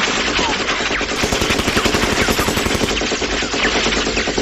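Automatic machine-gun fire in one continuous rapid stream, with the shots sharpest and closest together from about a second in to about three seconds in.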